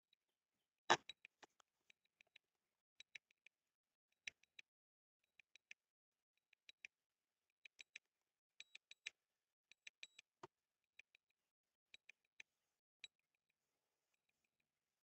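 Near silence broken by scattered faint clicks and ticks, with one sharper, louder click about a second in.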